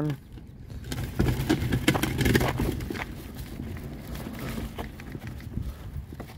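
Rustling and knocking as things are handled in a black plastic bin, busiest between about one and three seconds in, then scattered clicks.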